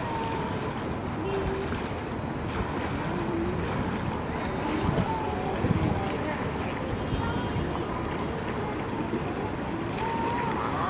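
Outdoor swimming pool ambience: steady wind noise on the microphone, with faint voices of people in the pool and light water splashing. A couple of louder gusts come about five to six seconds in.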